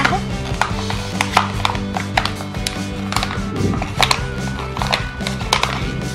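Background instrumental music, with irregular sharp crackles from a flattened clear plastic (PET) bottle being pressed down flat by hand on a wooden table.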